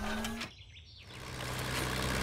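The last sung note of a song cuts off within half a second. After a short lull, a steady low engine hum fades in: a construction vehicle running.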